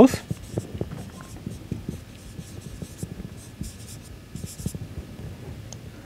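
Marker pen writing on a whiteboard: a run of light scratches and taps as a word is written out.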